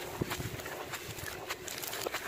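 Packed charcoal powder crunching and crumbling in gloved hands, lumps breaking apart and grit falling onto the floor, with many small sharp crackles over a gritty rustle.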